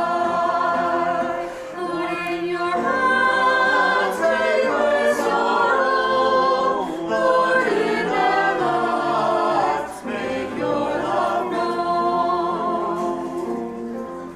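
A choir singing unaccompanied, several voices holding sustained notes and moving together through a slow hymn-like passage.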